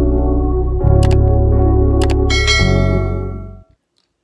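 Intro music with a steady deep bass, overlaid with mouse-click sound effects, one about a second in and another about two seconds in, then a bright bell-like ding that rings out. The music fades and stops shortly before the end.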